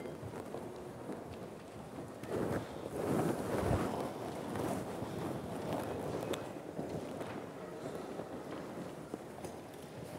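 Room noise from a seated audience: shuffling, rustling and small knocks, louder for a couple of seconds about two to four seconds in.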